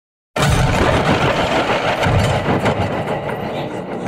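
Electronic intro of a psytrance track: a loud, dense noise with a heavy low end starts abruptly about a third of a second in and thins slightly over the following seconds.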